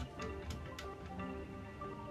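Background music playing softly, with a few light clicks in the first second as a die-cast model car is set onto a toy tow truck's metal flatbed.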